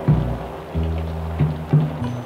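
Instrumental backing of a recorded pop ballad between sung lines: low sustained notes that change about four times, each starting with a sharp attack.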